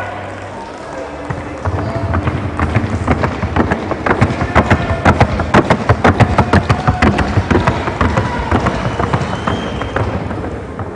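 A horse's hooves striking a wooden sounding board at a trot: a fast, even run of sharp hoofbeats that starts about a second and a half in and stops near the end.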